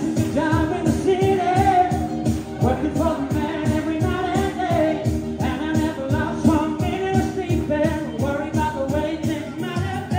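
Singers performing a pop-style song over instrumental backing with a steady beat.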